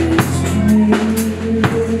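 Live rock band playing a song: a drum kit keeping a steady beat under electric guitar and bass.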